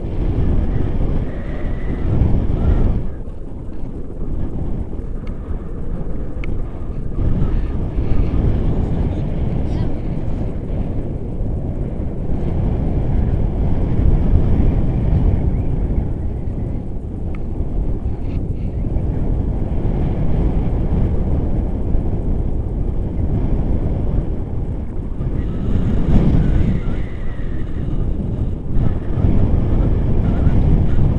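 Airflow from a tandem paraglider in flight buffeting the camera's microphone: a loud, steady rumble of rushing wind throughout.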